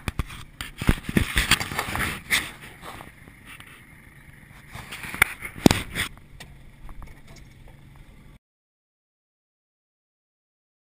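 Irregular knocks, bumps and scraping from handling on a small fishing boat, heaviest in the first three seconds and again around five to six seconds in, then cutting off abruptly to silence.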